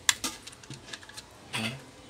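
Clicks and taps of plastic parts being handled inside a portable Bluetooth speaker's housing as the battery pack is worked loose: one sharp click just after the start, then a few lighter ones.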